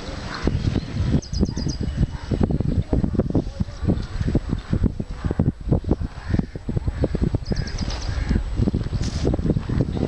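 Wind buffeting the camera microphone in gusts. A bird chirps a quick run of high notes twice, about a second in and again about seven and a half seconds in.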